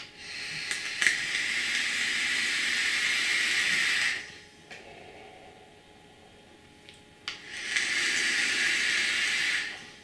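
Two draws on a Joyetech eVic AIO e-cigarette set to 37 watts: air hissing through the atomizer for about four seconds, then again for about two seconds near the end. A softer, breathy exhale of vapour lies between them.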